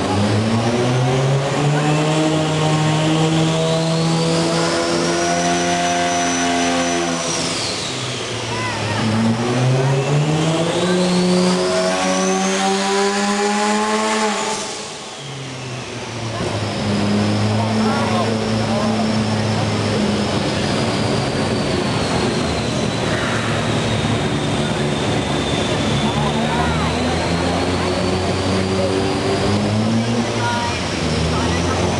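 Mazda Series IV RX-7's 13B twin-rotor rotary engine on a chassis dyno, revving up in a long climbing pull, dropping briefly in pitch, then climbing again in a second pull. About halfway through the revs fall away and the engine settles to a steady, lower speed.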